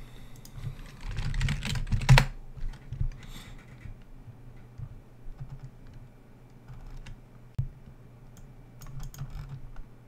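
Typing on a computer keyboard: a quick run of keystrokes in the first two seconds, then scattered single clicks.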